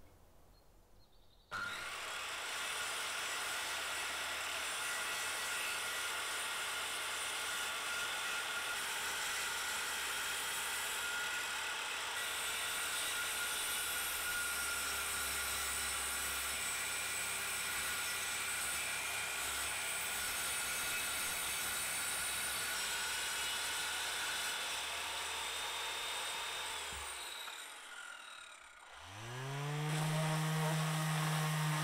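Corded circular saw starting about a second and a half in and cutting through a wooden board, running steadily with a whine for most of the clip, then winding down with a falling tone. Near the end a Bosch orbital sander starts up, its pitch rising and then settling.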